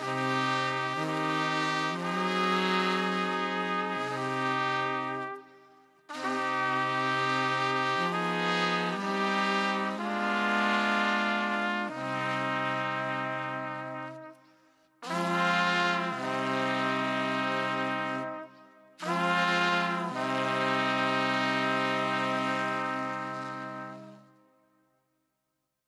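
A brass instrument playing a slow musical interlude in low, held notes. It plays four phrases with short breaks between them and fades out at the end.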